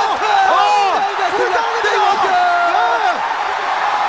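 Excited shouting voices, pitched high and rising and falling, over steady crowd noise at a knockdown in an MMA fight.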